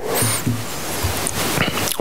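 People laughing: a man's short laugh amid a roomful of audience laughter, a steady blur of many voices that stops abruptly as speech resumes.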